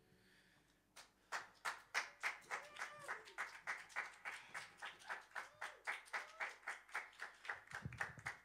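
Sparse applause from a few people, a small handful of pairs of hands clapping at about four claps a second, starting about a second in after near silence.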